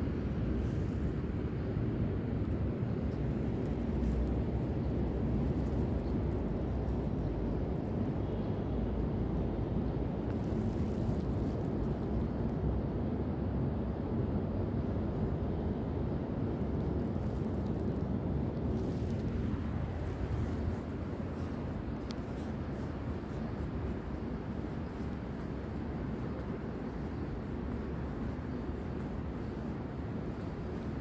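Steady low rumbling background noise with no distinct events, easing slightly from about twenty seconds in.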